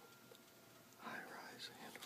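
Soft whispering that starts about a second in, after a near-silent moment.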